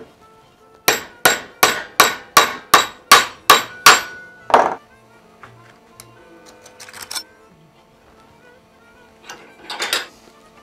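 Hammer blows on a thin metal strip clamped in a bench vise, bending it over into a bracket: about ten quick strikes, roughly three a second, each with a short metallic ring. Lighter metal clatter follows later, with a louder knock near the end.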